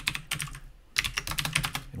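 Keystrokes on a computer keyboard, typing an edit into a code file and saving it: a run of key clicks, a short pause near the middle, then a quicker flurry of clicks.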